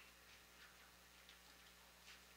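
Near silence with a low electrical hum and a few faint, irregular clicks from a laptop being operated.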